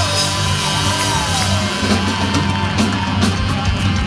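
Live rock band playing with drums, bass and electric guitars, a high wavering lead line bending up and down over them.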